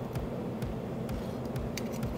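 Metal tongs and a chef's knife clicking and tapping lightly against each other and a plastic cutting board as sliced steak is spread over a sandwich, a few irregular clicks over a steady low kitchen hum.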